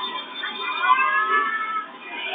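A high, meow-like wail that rises and then falls, lasting about a second, over dance music.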